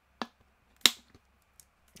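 Two short, sharp plastic clicks about two-thirds of a second apart, the second much louder: a plastic water bottle being handled.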